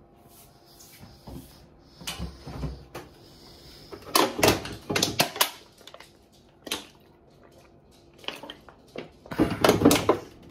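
A plastic water bottle crackling as it is handled and drunk from, with gulps of water, in a cluster of sharp crackles about four seconds in and another near the end.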